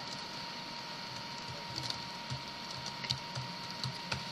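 Computer keyboard being typed on: a run of light, irregular keystroke clicks over a faint steady hum.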